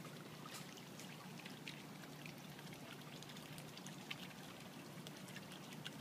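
Faint trickling water with scattered small drip-like ticks over a low steady hum.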